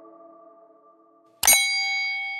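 An earlier ringing chord fades away, then about a second and a half in comes a sharp click followed at once by a bright bell-like ding that rings on and slowly fades. This is the notification-bell sound effect of a subscribe animation.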